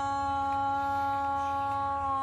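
A young woman humming one long, steady note with her lips closed.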